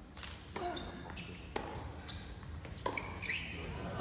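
Tennis rally on an indoor hard court heard from the stands: a few sharp racket-on-ball hits, roughly a second apart, with short voice-like sounds between them.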